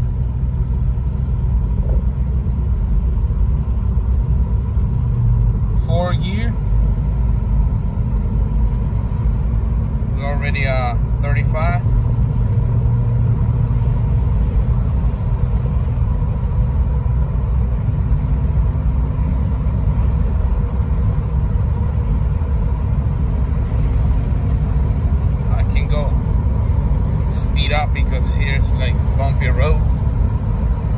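Steady low rumble of a VW MK4's 1.9 ALH TDI diesel engine and road noise heard inside the cabin, cruising in a high gear at about 1,900 rpm and 40 mph with the transmission coded for early, economy upshifts.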